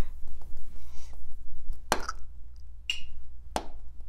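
A Samsung smartboard's touchscreen is tapped with a pen to open its colour palette, giving three short sharp clicks: one about halfway, one about three seconds in and one near the end. The middle click carries a brief high beep from the board itself.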